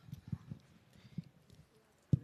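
A few faint, soft low knocks at irregular intervals over quiet room noise.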